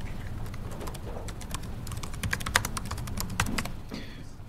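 Typing on a laptop keyboard: a run of irregular key clicks.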